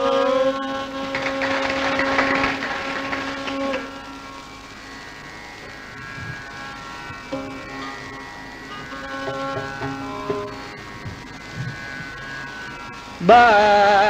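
Carnatic classical music: a held melodic note with gentle pitch bends that softens after about four seconds into quieter sustained notes, then a louder melodic line with wide, rapid oscillating ornaments enters near the end.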